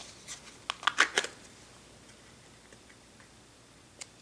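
Plastic wax-melt tub being handled: a few quick clicks and crackles of the plastic in the first second or so, then only faint room tone.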